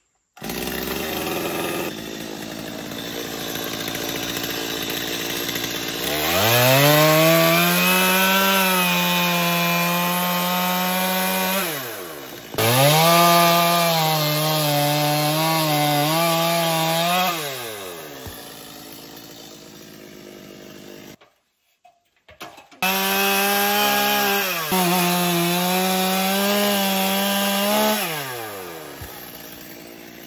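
Gas chainsaw cutting through a wooden roof beam end, revved up to a steady full-throttle pitch and dropping back to idle, three times over. There is a brief break in the sound between the second and third cuts.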